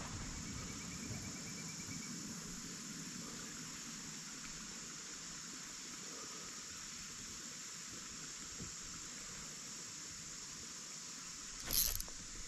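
Steady, high-pitched chorus of insects such as crickets, running evenly throughout over a low rumble, with a faint short trill in the first couple of seconds and a brief noise just before the end.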